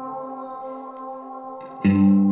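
Amplified electric guitar with an echo effect: a held chord rings and slowly fades, then a new, much louder guitar phrase starts suddenly just before the end.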